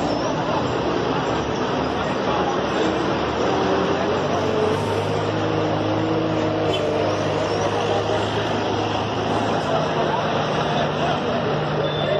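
Army trucks' diesel engines running steadily at low revs, with people talking in the background.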